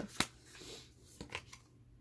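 Tarot cards being handled as the shuffle ends: a sharp card click shortly in, a faint rustle, then a couple of light clicks.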